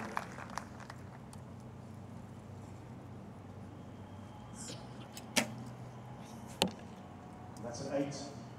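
Recurve archery shooting: two sharp knocks about a second apart in the second half, over a steady low hum.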